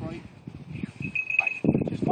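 Indistinct talking, louder near the end, with a thin, steady high ringing tone in the background that fades in and out and is strongest a little past the middle.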